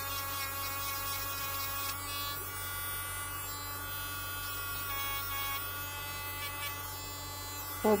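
Handheld electric nail drill (IMD-207 type) running with a pink abrasive stone bit: a steady high motor whine with a few slight shifts in pitch.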